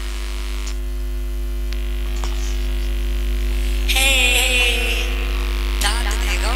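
Steady electrical mains hum from a stage sound system. A brief wavering voice sound, falling in pitch, comes about four seconds in.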